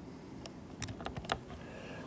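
A few faint, scattered light clicks, like keys being tapped.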